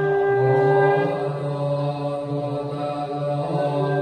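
Thai Buddhist monks chanting together in unison, a steady, sustained chant of many voices held on a level pitch.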